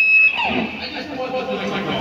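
A high, steady whine of amplifier feedback that cuts off about a third of a second in, followed by several people's voices talking at once.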